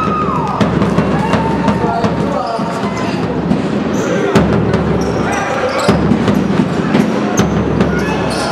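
Basketball game in a sports hall: a ball bouncing on the court in short sharp knocks, with brief high sliding squeaks, music from the hall's speakers and voices mixed in.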